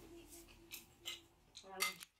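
Faint light clicks of metal forks against ceramic dinner plates as people eat, a couple of small ticks in the middle, with a brief voice near the end.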